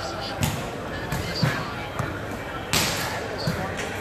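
Volleyball being struck by hands again and again in a rally: several sharp slaps, the loudest about three seconds in, over the steady chatter of a large crowd.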